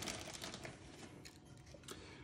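Faint rustling and crackling of oak flake substrate as a metal measuring cup is pressed down into it in a plastic tub, a slightly stronger crackle at the start.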